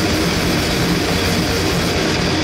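A grindcore band playing live: distorted electric guitars, bass and drums in a dense, loud wall of sound with no break.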